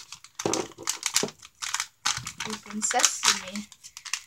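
Crinkly plastic-foil blind bag being handled and opened, with rapid irregular crackles of the wrapper.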